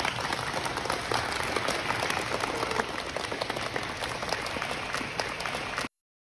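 A group of young children clapping: dense, irregular applause in a school gymnasium, held at a steady level, which cuts off abruptly shortly before the end.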